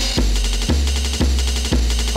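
Drum and bass track: a deep, sustained bass line under drum hits about twice a second and a ticking high cymbal pattern.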